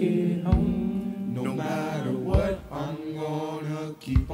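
Youth choir singing a gospel song in a cappella harmony, holding long chords that move every second or so. A low thump falls about every two seconds under the voices.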